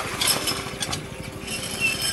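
A metal hand pump being worked, its handle and mechanism clanking with each stroke while water splashes into a metal bucket.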